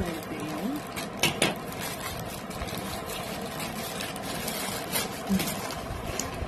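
Crinkling and rustling of a plastic courier mailer being cut open with scissors and handled, with a few sharp clicks from the scissors and packaging.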